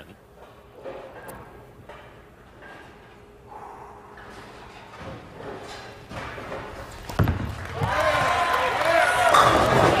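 Bowling ball laid down on the wooden lane with a thump about seven seconds in, rolling toward the pins and striking them near the end, while crowd voices rise.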